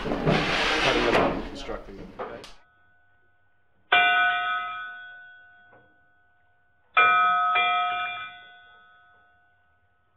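Indistinct voices for the first two seconds or so, then a bell struck once about four seconds in and twice in quick succession about seven seconds in, each strike ringing out and fading over a couple of seconds.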